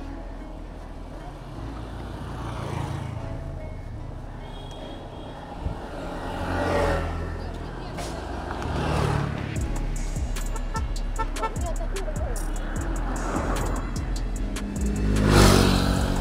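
Motor vehicles passing on the road one after another, each swelling and fading, the loudest near the end, over steady wind rumble on the bike-mounted camera's microphone.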